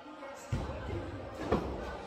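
A thrown axe strikes the wooden target board with a single sharp thud about one and a half seconds in, over faint background voices.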